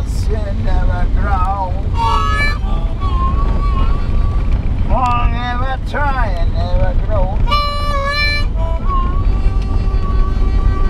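Wavering, gliding notes blown into cupped hands at the mouth, with a few long held notes and two louder, brighter notes about two seconds in and near eight seconds. Under them is the steady low rumble of a Toyota SUV driving on a gravel road.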